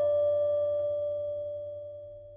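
A guqin note ringing on and fading away slowly, with no new pluck until just after the end.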